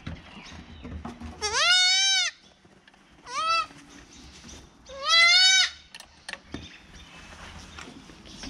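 Goat kid bleating three times, high-pitched: a long call, a short one, then another long call, each rising in pitch as it starts.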